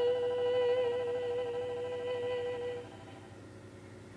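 One high musical note held with a slight waver, closing a live song, that stops about three seconds in and leaves quiet room tone.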